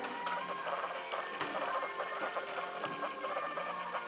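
Background music with a busy, clicking texture and held notes.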